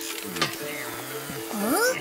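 Cartoon metalworking sound effect: a steady hissing, grinding noise with a sharp click about half a second in, over background music.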